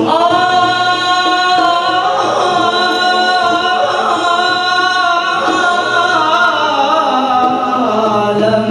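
Male voices singing a qasidah in a long, drawn-out melodic line, the notes held and sliding slowly in pitch.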